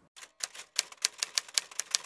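Typewriter keystroke sound effect: a rapid, slightly irregular run of key clacks, about eight a second.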